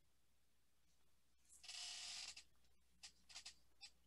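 Near silence: room tone through a headset microphone, with a brief faint hiss about halfway through and a few faint clicks near the end.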